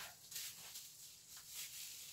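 Faint rustling of bubble wrap being pulled off a package, with a few soft clicks.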